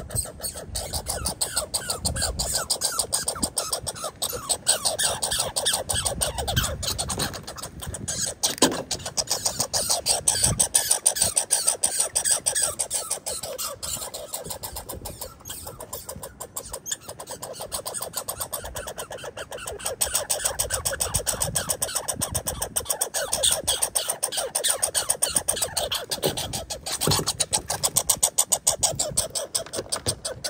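American red squirrel chattering: a long, rapid rattle of pulses that swells and fades, the territorial call of a male defending the feeding spot against a rival.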